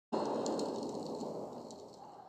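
Logo sting sound effect: a noisy rumble that starts suddenly, carries a few faint crackles, and fades away over about two seconds.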